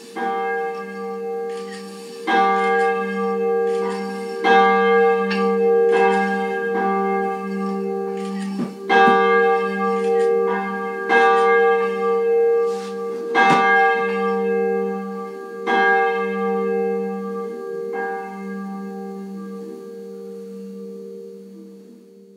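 Church bells ringing: a run of irregularly spaced strikes, each ringing on over a sustained low hum, dying away near the end.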